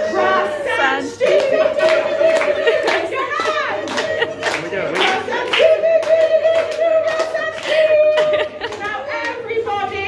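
A crowd clapping along in a steady rhythm while a voice holds two long sung notes, one after the other.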